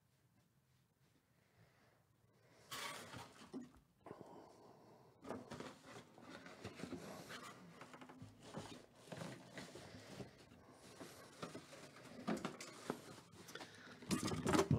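Near silence at first, then from about three seconds in, the irregular rustling and scraping of a cardboard box being handled and slid out, with a few sharp knocks.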